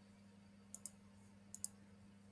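Faint computer mouse clicks: two quick pairs of clicks, the second pair about a second after the first, over a low steady hum.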